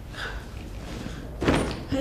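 A handbag set down on top of a wheeled suitcase, one dull thump about one and a half seconds in, with a short echo in the room.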